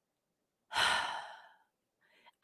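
A woman's sigh: one breathy exhale into a close microphone, starting a little under a second in and fading away over about a second.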